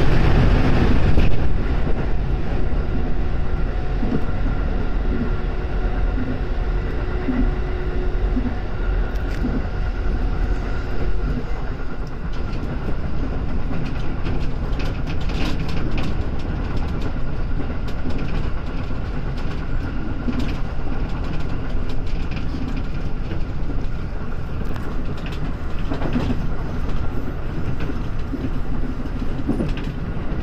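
Running noise of an electric train heard from inside the car: a steady rumble of wheels on rail, louder for the first second or two as it leaves a tunnel, with occasional short clicks over the rail.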